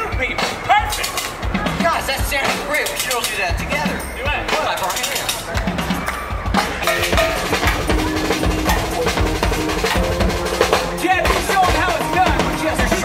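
A junk-percussion stage band strikes up, drumsticks beating on metal gas cans and buckets along with a drum kit, the strikes growing denser about halfway through. A performer's amplified voice is heard over it in the first half.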